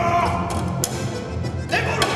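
A man singing over a diatonic button accordion. A held note ends with a slide early on, and a new sung phrase begins near the end.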